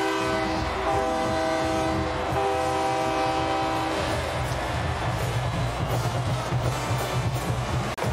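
Celebration horn for a touchdown: two long blasts, each a held chord of several notes, the second following a brief break. Through the second half comes a steady low rumble of stadium crowd and music.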